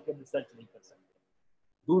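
A man's speech over a video call. It carries on for the first second, breaks off into a short gap of dead silence, and starts again just before the end.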